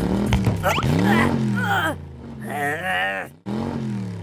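Cartoon engine noises from a small toy car, revving up and down in pitch several times over light background music, with a warbling high sound about two and a half seconds in.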